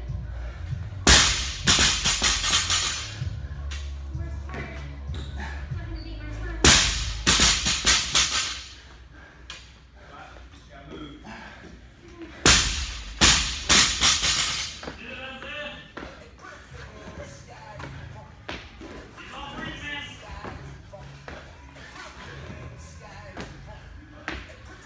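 A loaded barbell with rubber bumper plates dropped from overhead onto the gym floor three times, about five and a half seconds apart. Each drop lands with a loud thud and bounces several times before settling. Background music with vocals plays throughout.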